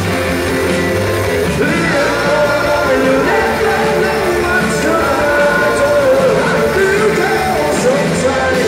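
Live rock band playing: a lead voice singing over electric guitars, bass and drums, loud and steady throughout.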